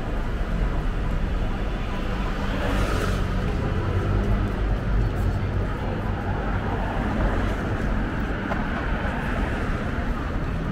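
Busy city street: road traffic running, with the chatter of a crowd of pedestrians, and a brief hiss about three seconds in.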